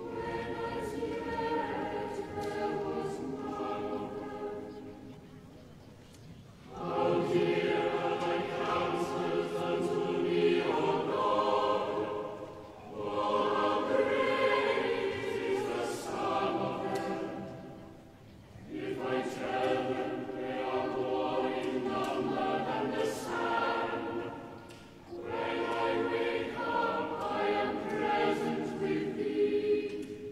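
Choir singing, in phrases of about six seconds with a short break between each phrase.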